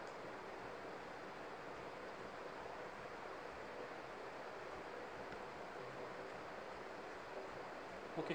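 Steady, even background hiss with no other sound: the recording's room tone.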